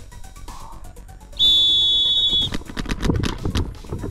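Electronic start horn sounds a steady high tone for about a second, about a second and a half in. Right after it, paintball markers start firing in quick, dense strings of shots.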